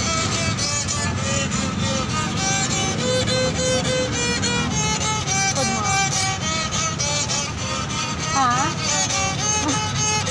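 Small handmade wooden fiddle bowed with a long stick bow, playing a melody of short held notes, with a wavering slide near the end.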